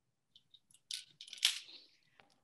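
A few faint, short rustles and clicks, growing denser about a second in and loudest near the middle, with no voice.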